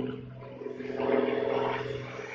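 Small plane's engine droning steadily overhead, swelling louder about a second in.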